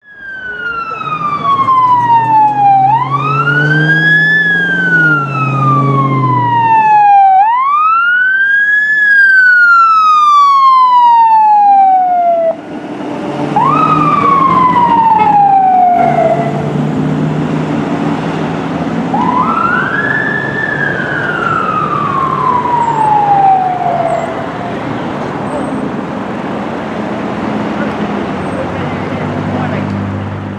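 Fire engine's electronic siren on wail, rising and then falling more slowly in cycles of a few seconds each, with a low steady drone underneath. The wail breaks off about halfway through, then starts again with a short cycle and a long one.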